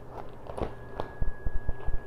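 Handling noise from a coated-canvas tote and the handheld phone filming it, as the bag is rummaged: a couple of sharp clicks, then a run of dull low thumps in the second half.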